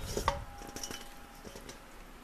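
A stainless steel mixing bowl knocks against the rim of a soup pot, leaving a short metallic ring that fades after about a second, followed by a few faint light taps as the bowl is shaken empty.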